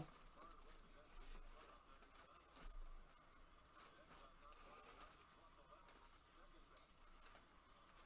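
Near silence: faint room tone, with a couple of soft handling noises as a football helmet is turned in the hands.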